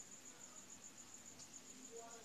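Faint cricket chirping: a steady high-pitched trill pulsing about eight times a second.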